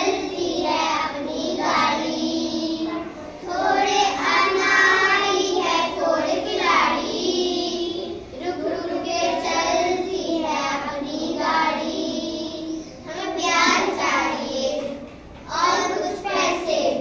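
A group of young schoolchildren singing a song together in unison, in phrases of a few seconds with short breaks between.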